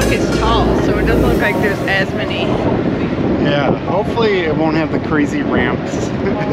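Wind rumbling and buffeting on the microphone, with indistinct voices over it. A low bass sound carries over for about the first second and a half, then stops.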